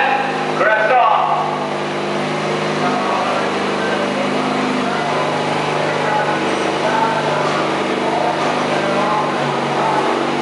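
A small garden tractor's engine running steadily while hitched to a pulling sled, with a slight drop in pitch near the end. Voices are heard over it in the first second or so.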